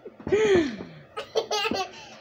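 A person laughing: one drawn-out laugh falling in pitch, then a few short laughing bursts.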